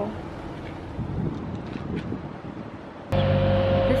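Light wind on the microphone and open outdoor ambience. About three seconds in, a steady mechanical hum with a constant whine starts abruptly, much louder.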